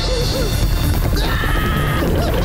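Cartoon soundtrack: action music over a heavy low rumble of rolling boulders, with a man's wavering, panicked scream starting a little after a second in.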